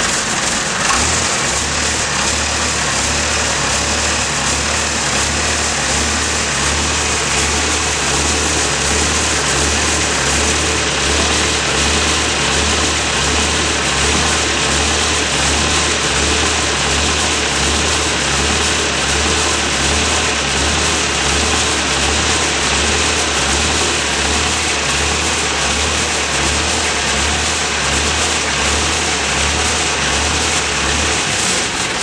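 Vacuum truck's auxiliary engine in its own enclosure running steadily, with a continuous rushing noise over it. A low, regular throb sets in about a second in.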